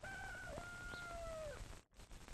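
A rooster crowing: one long call that dips briefly about half a second in and falls away in pitch near the end, over the faint crackle of an old film soundtrack.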